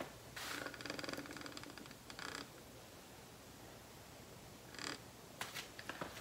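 Faint rasping rattle of a metal ceiling-fan ball chain being handled for about two seconds, followed by a brief rustle and a few faint clicks.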